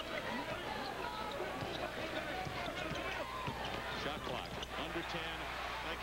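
A basketball bouncing on a hardwood court during live play, with a steady hum of crowd voices in a large arena.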